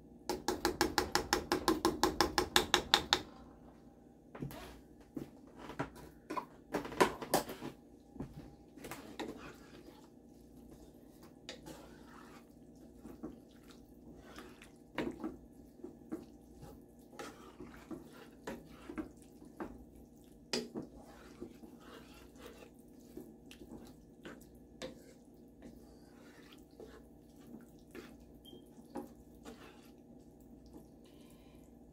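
A wooden spoon stirring wet ground beef and enchilada sauce in a skillet, with scattered taps and scrapes against the pan. It opens with a quick, even run of about seven clicks a second for about three seconds, the loudest part. A second, shorter burst of clicks comes about seven seconds in.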